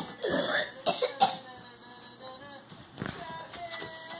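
A person coughing or clearing the throat in short sudden bursts in the first second or so, followed by a quieter stretch with faint steady held tones and a few light clicks.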